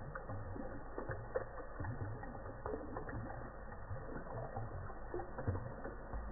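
Water drops falling from a bathtub overflow into the bathwater, heard as irregular dull plinks and ticks, several a second. The sound is slowed down and lowered in pitch, as slow-motion playback leaves it.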